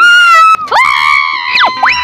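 Comedy soundtrack effects over music: a held high tone, then after a short break more tones and two or three quick swooping slides in pitch, like cartoon boing sound effects.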